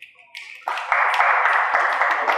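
Small audience clapping: a few claps start faintly about a third of a second in, then swell into steady applause just after half a second.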